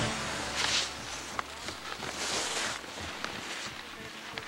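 Skis swishing through powder snow: two brief hisses, about half a second in and again about two seconds in, with a few faint clicks.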